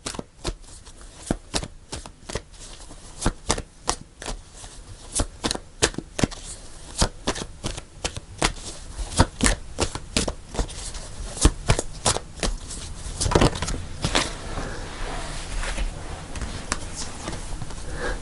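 A tarot deck being shuffled by hand: many quick, irregular clicks of cards against each other, with a longer rustle about three-quarters of the way through.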